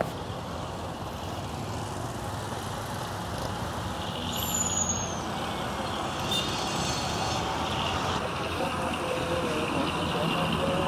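Busy road traffic with motorcycles and minibuses passing: a steady rumble of engines and tyres. A brief high, falling squeal comes about four and a half seconds in.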